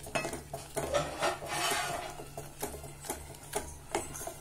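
A wooden spatula stirring a watery grain mixture in a stainless steel pot, knocking against the sides several times, with a longer swishing scrape about a second and a half in.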